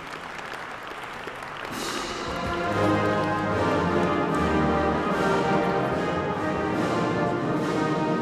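Audience applause, joined about two seconds in by orchestral music with brass that grows louder and carries on.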